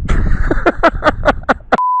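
A man laughing in quick, even bursts, about six a second, with wind rumbling on the microphone. Near the end a steady one-tone censor bleep replaces the sound.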